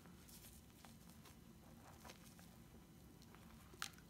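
Near silence, with a faint crackle of soft bath foam being squeezed in the hand and its bubbles popping, and one slightly louder click near the end.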